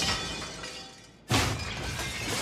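Crackling, shattering magic sound effects from a film soundtrack. A burst that began just before fades away, and a new sudden burst strikes about a second and a quarter in, with score music underneath.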